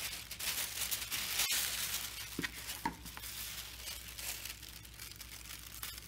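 Thin iridescent plastic tablecloth crinkling and rustling as it is handled over a plastic bowl, loudest in the first two seconds, with a sharp click about a second and a half in.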